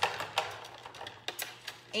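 Paintbrush being cleaned: a series of light, irregular clicks and taps.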